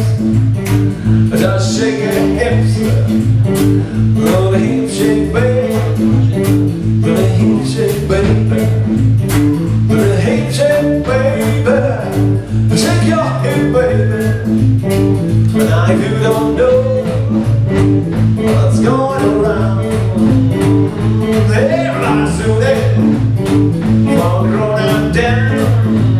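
Live electric blues band playing, electric guitar to the fore over a steady repeating bass line and drums.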